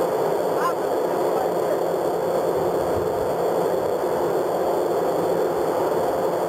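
Steady rushing wind and machinery noise on a warship's deck, with a steady hum running under it. A faint short rising call sounds about two-thirds of a second in.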